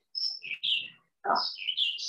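Small birds chirping in the background: a quick run of short, high chirps, a pause, then another cluster of chirps near the end.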